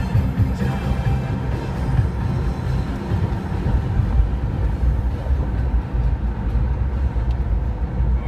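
Steady low engine and road rumble inside a moving car's cabin, with music playing over it.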